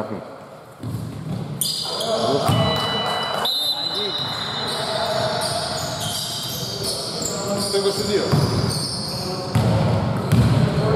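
Basketball bouncing on a hardwood gym court during play, with brief high squeaks a couple of seconds in, heard in a large echoing sports hall.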